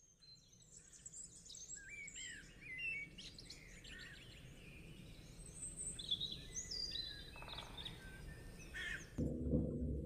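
Several songbirds chirping and whistling in quick, gliding calls over a faint hiss. About nine seconds in, louder music comes in.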